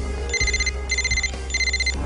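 Mobile phone ringtone: three short electronic trilling rings in a row, each about half a second long, over a low steady music bed.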